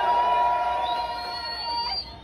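Steel pans of a steel orchestra ringing on a held chord that fades out, with a crowd cheering. A high whistle rises in pitch in the second half, and everything cuts off suddenly at the end.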